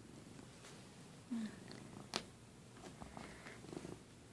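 Domestic cat purring close to the phone's microphone as it rubs its face against the phone. A brief low sound comes about a second in, and a sharp knock against the phone about two seconds in.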